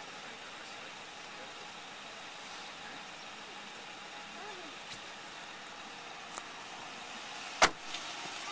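A car's rear door being shut: one sharp, loud thud near the end. Before it there is only a faint steady background hiss.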